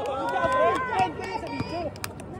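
Basketball players' voices calling out on an outdoor court, mixed with running footsteps and several sharp knocks on the hard court surface.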